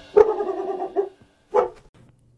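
A Rottweiler barking twice: a longer bark starting sharply just after the start, then a short one near the end.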